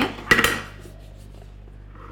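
Plastic fondant smoother set down on a countertop: a short clatter about a third of a second in, then quiet room tone.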